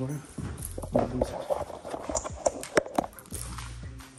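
A handful of sharp, irregular knocks and clicks, like hard objects being handled and set down, over a background murmur of voices.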